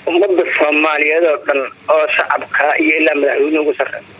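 A person's voice speaking loudly through a narrow, telephone- or radio-like channel, in two long stretches with a short break just before two seconds in.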